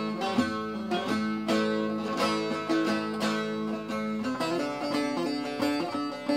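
Bağlama (Turkish long-necked saz) played solo, an instrumental melody of quick plectrum strokes over ringing strings; the tune moves down to lower notes about four seconds in.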